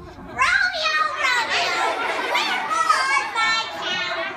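High-pitched voices talking and calling out, with no clear words.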